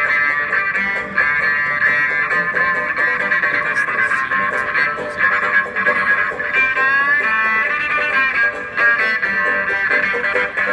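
Electric cello bowed in a continuous melody, with a pitch slide about seven seconds in.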